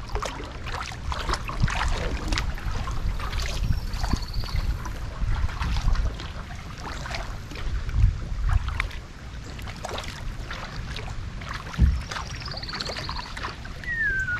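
Kayak paddle strokes with water splashing and dripping off the blades, over a low wind rumble on the microphone. A bird calls briefly about four seconds in and again near the end.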